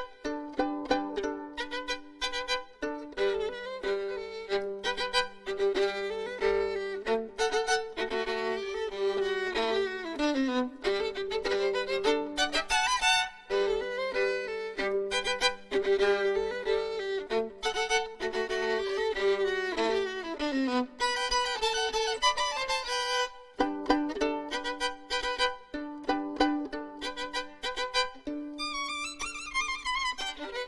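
Unaccompanied solo violin playing a fast showpiece built on an Egyptian melody: quick running notes with sliding downward runs, broken twice by short pauses.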